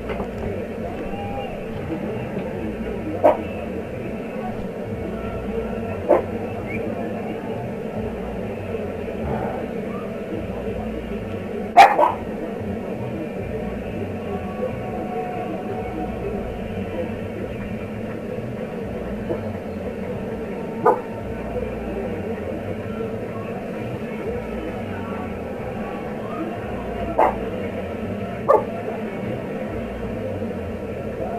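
Six short, sharp sounds at irregular intervals, the loudest about twelve seconds in, over a steady background noise.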